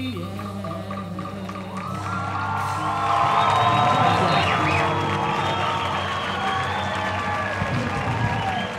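Live band holding the final chord at the end of a song, with the audience starting to cheer and applaud about two seconds in, growing louder.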